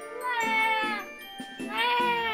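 A baby crying: two wailing cries, each falling in pitch as it ends.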